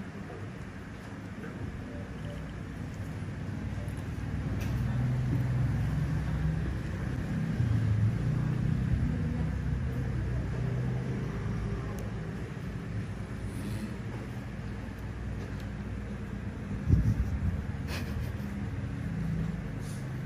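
A steady low rumble of background noise, with a few faint clicks and a dull thump about seventeen seconds in.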